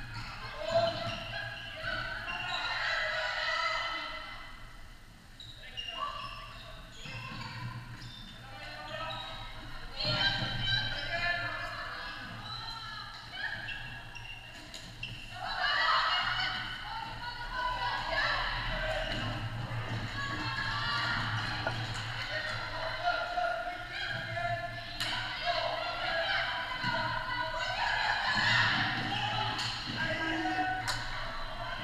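Floorball game sound in a large, echoing sports hall: players' shouts and calls, with occasional sharp knocks of sticks and the plastic ball.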